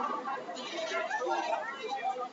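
Indistinct chatter of several people talking in a bowling alley.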